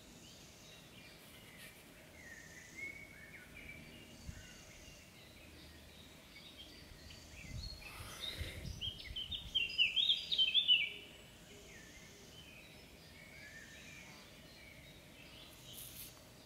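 Birds singing, faint phrases throughout and one louder burst of quick, chattering song about two-thirds of the way in. A brief low rumble comes just before the loud song.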